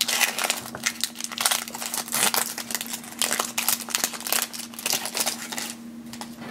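Booster pack's crinkly foil wrapper being torn open and handled, a dense run of irregular crackles and rustles.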